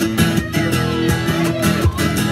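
Two acoustic guitars strumming chords together in an instrumental passage, with no singing.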